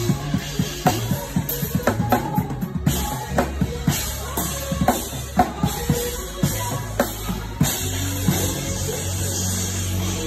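Acoustic drum kit played live over sustained organ notes: busy snare, kick and cymbal strokes. The drumming thins out after about six seconds while the organ holds low notes.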